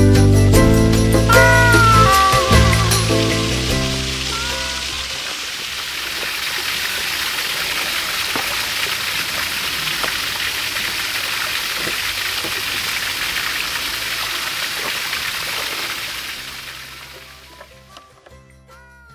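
Background music fading out over the first few seconds, then the steady rush of a small garden waterfall splashing over boulders into a pond, fading out near the end.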